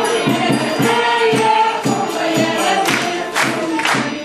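A group of voices singing together over a steady percussion beat, performed live.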